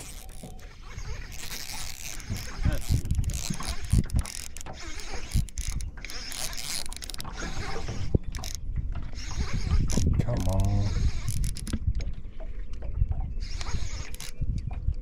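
Baitcasting reel being cranked, its handle and gears turning in short runs with small clicks, as a hooked panfish is reeled in on light BFS tackle. A steady low rumble runs underneath.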